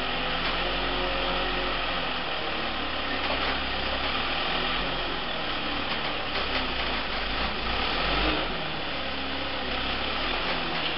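Gradall telehandler's engine running steadily while its boom lifts a pallet of drywall to an upper floor.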